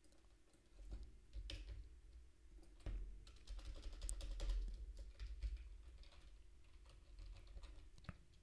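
Faint typing on a computer keyboard: irregular key clicks with soft low thumps, starting about a second in.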